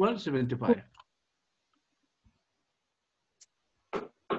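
A man's voice speaking for about a second, then near silence until speech starts again right at the end, preceded by a short sharp click.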